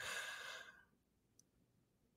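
A man's breathy sigh as his laugh dies away, lasting under a second and fading out, then silence.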